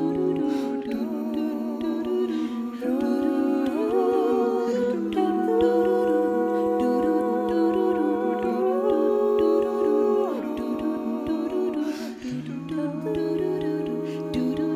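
Six-voice a cappella ensemble singing sustained wordless chords in close harmony, stepping to a new chord every second or two, with vibrato in the upper voices. A low male voice holds a deep note at the start and comes back in near the end.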